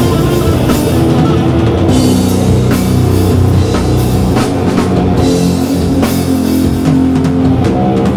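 Sludge/doom metal band playing live: distorted electric guitars and bass holding heavy low chords over a drum kit, with cymbal crashes.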